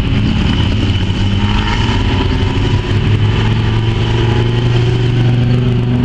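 Production saloon race car engines running at steady low speed around a dirt speedway track, one car's engine note growing louder as it comes by close near the end.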